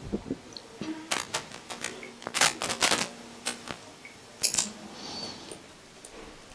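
A string of sharp small clicks and light metal knocks from hands handling the pump's shaft, oil seal ring and a screwdriver, most of them between about one and four seconds in, with one more a little later.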